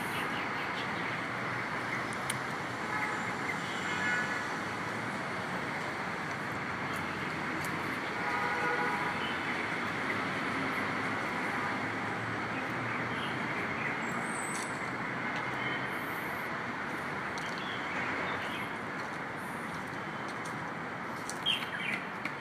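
Steady outdoor hum of distant city traffic, with faint distant voices briefly about three seconds in and again around eight seconds.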